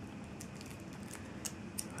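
Faint, sparse crinkles and ticks of the plastic wrap around a stack of trading cards as fingers work at it, a few separate ticks over low room noise.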